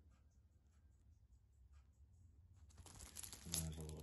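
Paper receipts rustling and crinkling as they are handled, faint at first and louder from about three seconds in.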